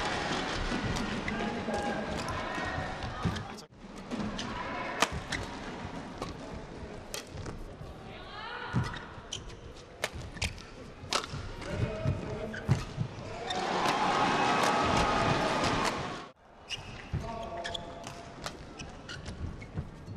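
Badminton rallies: sharp cracks of rackets striking the shuttlecock and shoes squeaking on the court, over steady arena crowd noise. About two-thirds of the way through the crowd cheers loudly for a few seconds, the loudest sound here. The sound drops out briefly twice.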